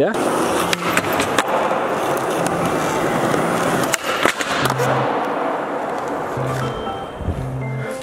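Skateboard wheels rolling on a smooth concrete floor, with sharp wooden clacks of the board popping and landing about a second and a half in and again around four seconds in, during a flip trick over a flat rail. The rolling fades near the end.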